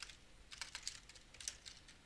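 Computer keyboard typing: faint key clicks in short, irregular runs.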